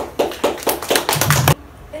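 A small audience clapping, a quick run of claps that cuts off abruptly about a second and a half in.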